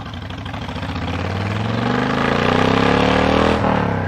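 Honda VTX 1300S V-twin motorcycle engine revving up under acceleration, its note climbing steadily and getting louder for about three and a half seconds, then falling abruptly near the end. A rush of wind builds with it.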